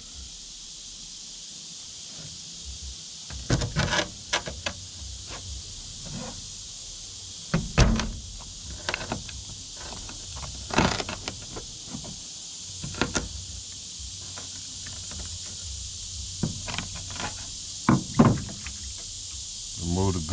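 Ulu-style knife cutting the heads off scaled bluegill on a plastic cutting board: irregular clusters of knocks and crunches as the blade goes through the backbone and strikes the board, over a steady high hiss.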